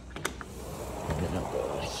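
Sliding glass patio door unlatched with a few sharp clicks, then rolled open along its track.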